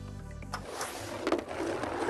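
Quiet background music with steady low tones under a soft rushing noise, between two bingo number calls.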